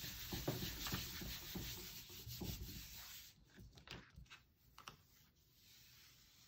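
Hand rubbing a sheet of Bristol paper down onto an inked gel printing plate to pull a ghost print: a steady papery rubbing for about three seconds, then a few faint paper rustles as the sheet is handled.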